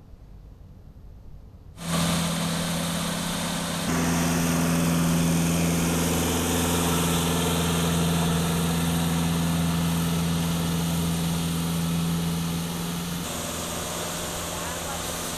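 Road roller's engine running steadily at a constant pitch. It comes in suddenly about two seconds in and gets louder a couple of seconds later.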